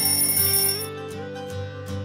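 Background guitar music with a short, high bell-like ding at the start that fades within about a second: a timer chime marking the end of an exercise interval.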